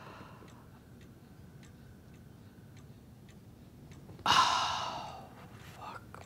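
A clock ticking faintly and steadily, then about four seconds in a woman's sudden, loud, heavy sigh that trails off over about a second.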